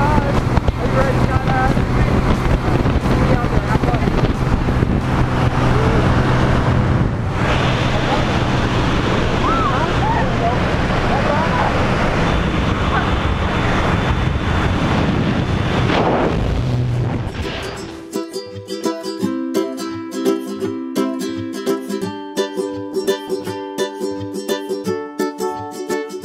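A small plane's engine drone and wind rush inside the cabin, with shouted voices over it. About eighteen seconds in this gives way abruptly to background music of plucked notes.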